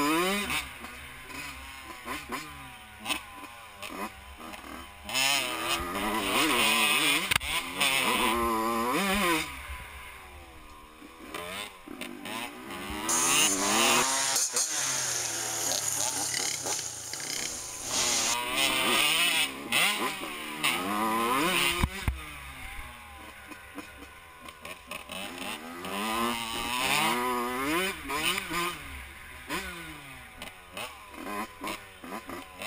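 Yamaha YZ85 two-stroke dirt bike engine revving hard close to the microphone, its pitch climbing and dropping again and again as it rides the track. For a few seconds in the middle the engine sound gives way to a steadier hiss before the revving resumes.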